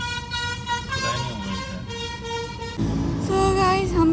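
Vehicle horn sounding in street traffic, a steady held tone lasting nearly three seconds, followed by louder traffic rumble with a voice near the end.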